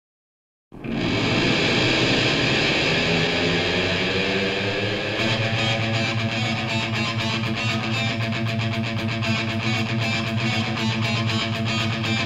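Heavy metal music with distorted electric guitar starts after a brief silence. A fast, even pulse joins about five seconds in.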